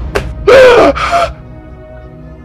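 A man's loud, astonished gasp: a pitched vocal cry about half a second in, followed by a shorter one, over steady background music.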